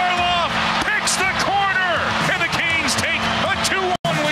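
A hockey play-by-play announcer shouting an excited goal call over a steady music bed.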